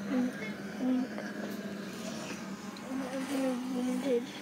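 A child making short hummed vocal sounds, two brief ones near the start and a longer wavering one in the last second, over a steady low hum.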